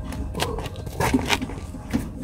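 Handling noise from telescope gear: several short clicks and scrapes over a low rumble.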